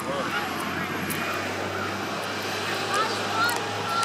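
Low, steady drone of an airplane passing over, heard beneath scattered distant shouts and voices from the players and spectators.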